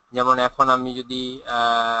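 A man's voice speaking in a drawn-out, sing-song way, ending on a long held vowel near the end.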